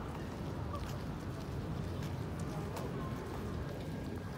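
Outdoor walking ambience: a steady low rumble on the phone's microphone, footsteps on a paved path about twice a second, and faint distant voices.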